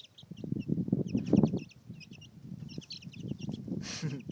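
Young chicks peeping in quick runs of short, high, falling chirps, over the scuffling and wing-fluttering of a chick dust bathing in loose dirt. The scuffling is loudest about a second in and again near the end.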